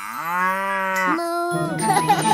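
A cow mooing once, a single long moo that rises in pitch at the start and holds for about a second. Children's-song music comes back in just after it.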